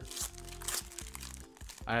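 Foil trading-card booster pack wrapper crinkling in the hands as it is torn open, a few short crackling rustles in the first second.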